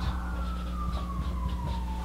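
Faint strokes of a felt-tip marker writing on a whiteboard, over a steady low hum. A thin high tone slides slowly down in pitch throughout.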